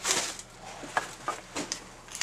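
A few light knocks and clicks with faint rustling: a sharp one at the start, then more about a second in and near the end.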